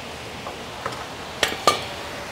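Metal parts of a motorcycle centerstand and its mounting bolt clinking as they are fitted to the frame: a few light clicks, then two sharper clinks about a second and a half in, the second ringing briefly.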